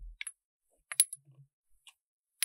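A small metal scoop spoon clinking and tapping against a small glitter jar as spilled nail glitter is scooped back in: a few short, sharp clinks, the loudest about a second in, with a soft thump at the start.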